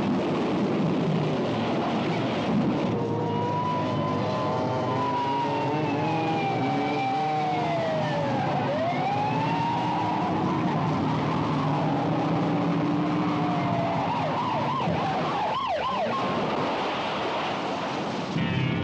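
Police car siren wailing over car engine and tyre noise. Its pitch slides down to a low point about halfway through, then climbs back up.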